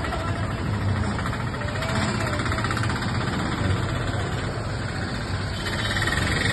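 A vehicle engine idling steadily amid street noise, with faint voices in the background.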